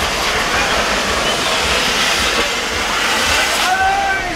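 Fireworks on a toro de fuego hissing steadily as they spray sparks, with a few short whistling or shouted glides near the end.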